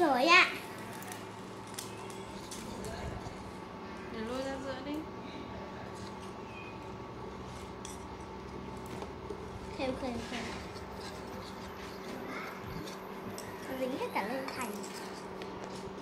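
Wire whisk scraping and clicking against a small stainless steel pot as eggs are scrambled on an induction cooktop, over a steady hum. A child's voice slides loudly in pitch at the start and is heard briefly a few more times.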